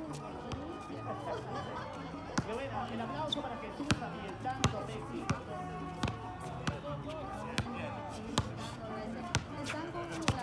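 Basketball being dribbled on a hard outdoor court: about a dozen sharp bounces, a little faster than one a second and not quite evenly spaced, over a continuous background of voices and music.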